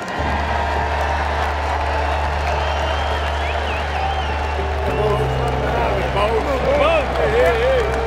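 A laugh, then background music with long held bass notes that move to a new chord about five seconds in, over stadium crowd noise and voices.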